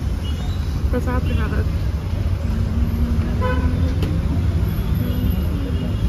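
Street traffic rumbling steadily, with a vehicle horn sounding in held tones around the middle.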